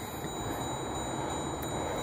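Steady low background noise with a faint high whine, and no distinct event.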